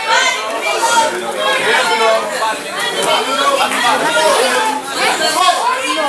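Ringside crowd chatter: many voices talking and calling out over one another throughout a youth boxing bout.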